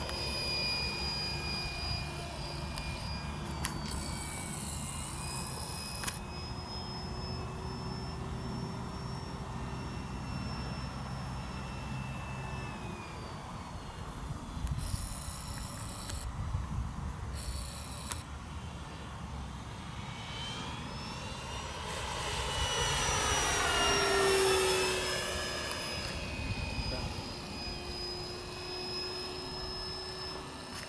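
Radio-controlled T-28 model aircraft flying, its motor and propeller giving a steady high whine that drifts in pitch as it manoeuvres. It swells louder and drops in pitch as it passes close by, a little after the 20-second mark, then carries on at a distance.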